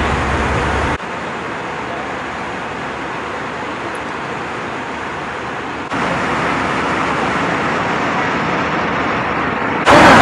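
Steady airliner cabin noise, the even rush of engines and air flow. It drops in level about a second in, comes back up near six seconds, and turns much louder just before the end.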